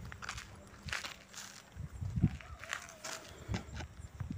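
Soft, irregular footsteps and scuffs with handling noise from a handheld phone, and a faint wavering tone about two and a half seconds in.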